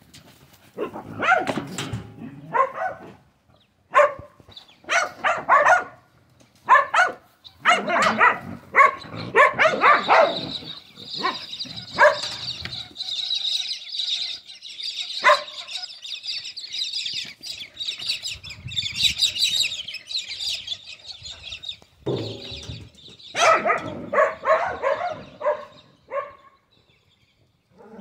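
A person laughing in repeated bursts while two dingoes play chase. A steady high-pitched hiss fills the middle stretch, and more bursts of laughter or animal sounds come near the end.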